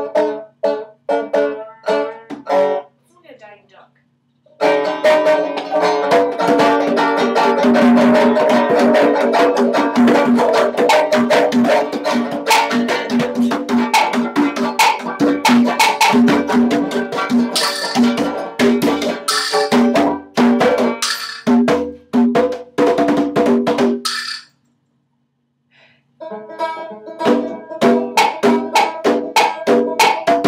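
Banjo and a pair of conga drums jamming. It opens with single picked banjo notes, then after a short pause comes dense banjo playing under loud, rapid hand strokes on the congas. The playing stops suddenly for about two seconds near the end, then starts up again.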